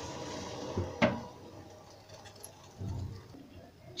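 Herbal tea boiling hard in a steel pan on a gas burner, a steady hiss, broken by a single sharp click about a second in, after which it is much quieter.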